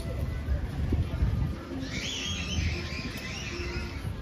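Birds chirping, starting about halfway through, over a low outdoor rumble and indistinct voices.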